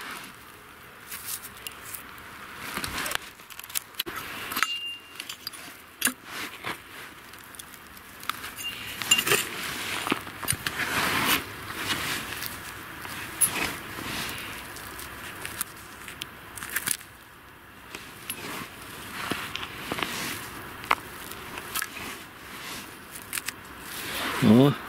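Small three-tined hand cultivator and gloved hands digging through stony, gravelly soil: irregular scrapes with sharp clicks of small stones knocking together.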